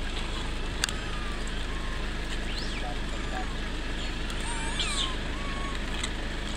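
Steady low outdoor rumble with a sharp click about a second in, and a few short, high, squeaky rising-and-falling calls, several together near the end.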